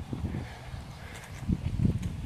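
Handling noise on the camera's microphone: low rumbling with a few dull thumps, the heaviest near the end, as the camera is picked up and moved.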